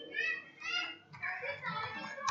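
Children's voices in several short bursts, high-pitched, with a few computer keyboard keystrokes.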